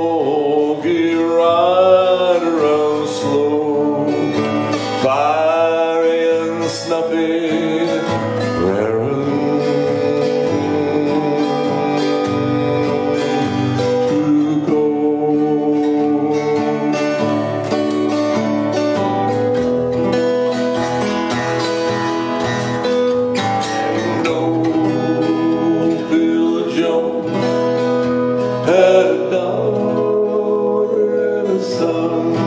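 Acoustic guitar playing a slow country cowboy tune, with a man's voice singing wordless gliding and long held notes into the microphone.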